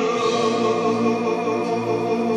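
A children's chorus singing long held notes.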